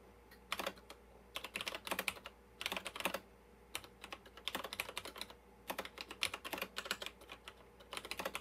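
Typing on the NCR PC4's keyboard: quick runs of key clicks in short bursts with brief pauses between them.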